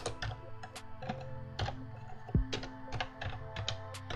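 Typing on a computer keyboard: a quick, irregular run of key clicks. Soft background music with held tones plays underneath.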